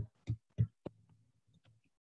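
Four short thumps in quick succession within the first second, about three a second, the last one sharper, over a faint low hum.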